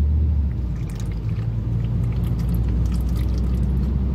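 Drinking from an aluminium can: faint liquid sounds and swallows over the steady low rumble of a car cabin.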